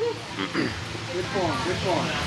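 Indistinct voices: background speech from people in the room, with no clear words.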